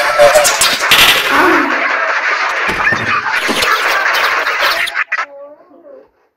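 A loud, dense jumble of several Talking Tom app clips' audio playing over each other at once, harsh and noisy. About five seconds in the jumble cuts off, leaving a single pitched, wavering cartoon voice.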